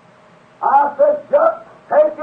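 A man's voice speaking loudly in short, raised-pitch syllables, starting about half a second in, on an old 1950s sermon recording with a narrow, muffled sound.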